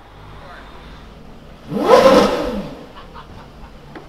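A car passing by on the street with a short burst of engine revs about two seconds in, the pitch rising and then falling as it goes past, over a low steady hum.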